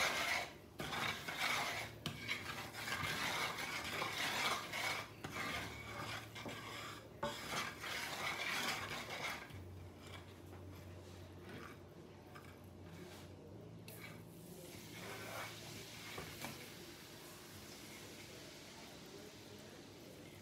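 Wooden spatula stirring and scraping a flour-and-oil roux for gravy around a frying pan, a busy rasping rub. About halfway through the stirring becomes much quieter and sparser.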